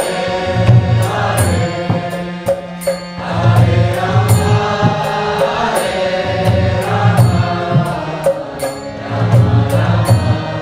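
Devotional kirtan chanting: voices singing over a harmonium, with karatala hand cymbals striking on a steady beat and a drum pulsing underneath.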